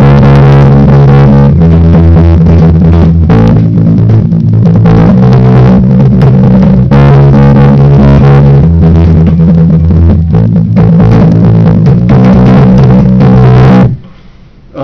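Electric bass guitar playing a punk rock verse bassline of fast repeated picked notes, moving to a new pitch about every two seconds, loud; it stops abruptly at the end.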